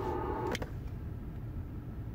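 Vehicle engine idling as a steady low rumble, with a single short click about half a second in.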